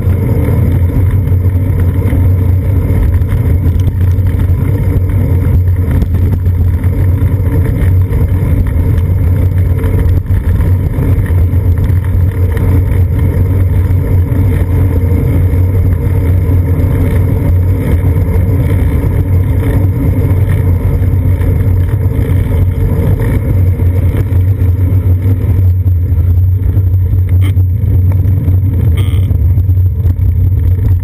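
Steady low rumble of wind buffeting and road vibration on a seat-post-mounted GoPro Hero 2 while cycling on city streets in a strong wind.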